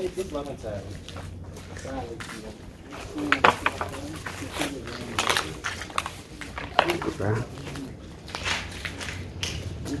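Voices talking in bits and snatches that the recogniser did not catch, with scattered sharp clicks and knocks throughout.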